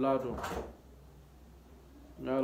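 A man's voice ends a phrase about half a second in, followed by a pause with only low room hum.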